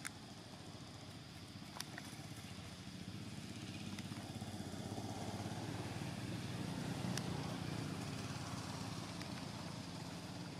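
A motor vehicle engine, with a low steady drone that swells to its loudest about seven seconds in and then fades as it passes. A few sharp clicks sound over it.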